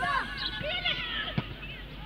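Distant shouts and calls of football players and spectators on the pitch, with one sharp knock about one and a half seconds in.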